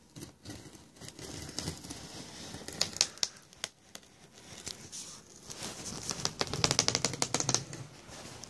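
Folding pocket knife blade cutting along the tape and cardboard of a box, with scattered scrapes and clicks, then a quick run of rapid ticks near the end as the blade is drawn along the seam.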